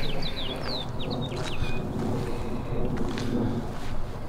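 A small bird chirping a quick series of short, falling notes in the first second and a half, over a steady low rumble of wind on the microphone.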